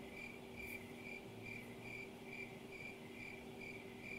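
Faint, evenly repeating high chirp, about three chirps a second, like a cricket, over a low steady hum.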